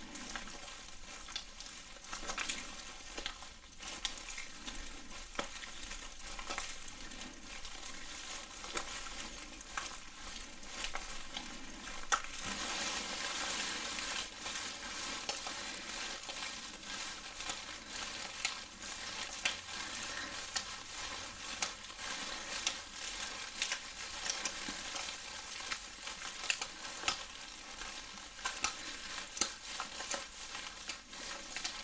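Wet gloved hands rubbing and squeezing close to the microphone: a continuous wet, crackling squelch full of small clicks, louder for a couple of seconds about twelve seconds in.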